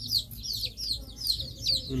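Birds chirping: a steady run of short, high-pitched peeps, each sliding downward, about four or five a second.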